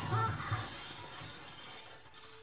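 Glass shattering, the crash and scattering pieces fading away over the two seconds.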